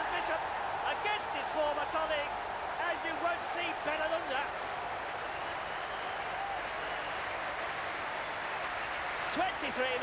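Football stadium crowd cheering and shouting after a home goal, with single voices standing out over the first few seconds before it settles into a steady crowd noise.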